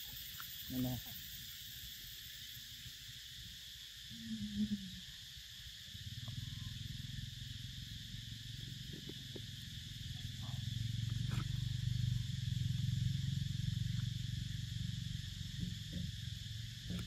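A steady high-pitched insect drone from the forest, with a low rumble that comes in about six seconds in and grows louder. A couple of short low calls or voices sound in the first few seconds, with a few faint clicks later.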